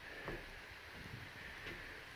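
Faint outdoor background: a low, steady hiss with a few soft ticks.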